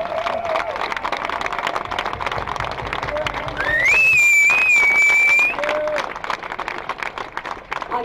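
Crowd applauding with dense clapping. A whistle rises in pitch about three and a half seconds in and is held for about two seconds, the loudest sound, with a few short shouts among the clapping.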